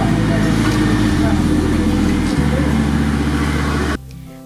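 Many people talking at once at a gathering, heard over a loud, steady rumble and hiss. It cuts off suddenly at the end.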